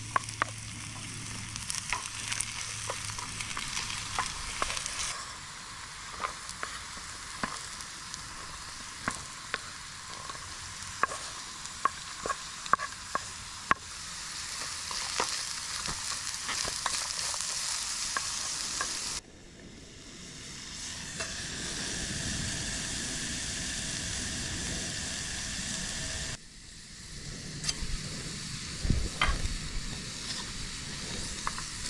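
Diced onion, garlic and carrots sizzling in a small camping pot over a canister gas stove, with a wooden spatula tapping and scraping the pot as it stirs. The sizzle cuts out abruptly twice, about two-thirds of the way in and again near the end, and swells back each time.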